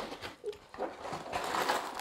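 The cardboard end flap of a building-brick set's box being pulled open and the box handled: dry scraping and rubbing of cardboard with a few small clicks, louder in the second half.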